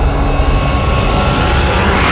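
Cinematic logo-reveal sound effect: a deep rumble under a rushing whoosh that swells toward the end.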